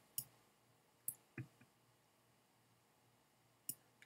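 Four faint computer mouse clicks, spaced irregularly against near silence, as the analysis video is navigated to the next play.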